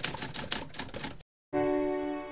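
Typewriter key-click sound effect in a quick run of clicks as on-screen text types itself out, stopping about a second and a quarter in. A quarter second later a sustained musical chord strikes and starts to ring out.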